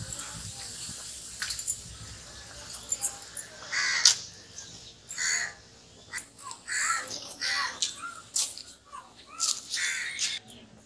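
Crows cawing repeatedly, with several loud calls in the second half, over short sharp clicks of drumstick pods being cut against a curved blade on a wooden block.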